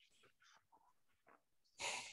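Near silence, then near the end a short, sharp breath into the microphone that fades within about half a second.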